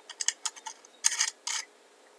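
Small brass SMA calibration standard, the open, being screwed by hand onto the NanoVNA V2's test port: a few light metallic clicks, then two short, louder scratchy bursts just after a second in as the threads turn.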